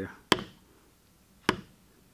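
Two sharp strikes on a metal backgrounder stamping tool, driving it into leather that lies on a stone slab, the blows about a second apart.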